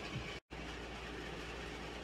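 Faint steady background hiss and low hum of room noise, with a split second of dead silence about half a second in.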